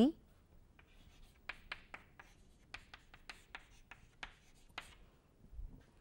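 Chalk writing on a blackboard: a run of short, sharp taps and scratches of chalk against the board that stops about five seconds in.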